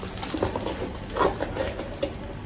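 Plastic bubble wrap rustling and crinkling as it is handled, with a few short crackles.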